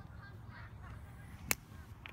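Faint outdoor background with a low wind rumble, and a single sharp smack about one and a half seconds in.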